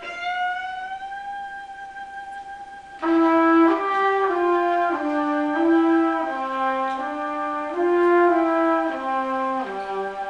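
Trumpet and cello improvising together. A held note glides slightly upward, then about three seconds in the trumpet comes in louder with a line of short stepwise notes over a sustained bowed tone.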